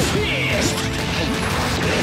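Staged fight sound effects, crashing hits with sparking impacts, laid over a background music track.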